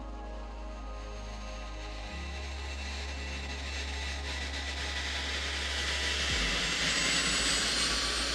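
Background music with low held notes, and the rushing of the WhiteKnightTwo carrier aircraft's four turbofan jet engines, growing louder from about three seconds in as it comes in low over the runway to land.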